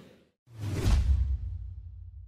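A whoosh sound effect with a deep low boom underneath, starting suddenly about half a second in, loudest around a second in, then fading.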